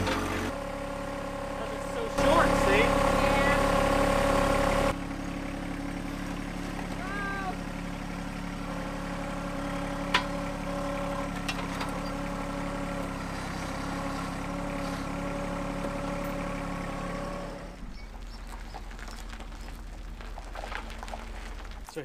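John Deere 1025R sub-compact tractor's three-cylinder diesel running steadily while it works its loader grapple, louder for a few seconds near the start. The engine sound drops away a few seconds before the end.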